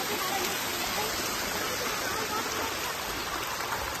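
Steady rushing noise of flowing water, even throughout, with faint distant voices under it.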